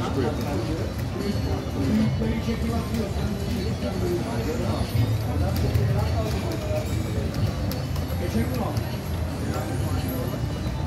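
Casino gaming-floor din: slot machine music and jingles over a constant hum of background voices, while an EGT Bell Link slot machine spins round after round.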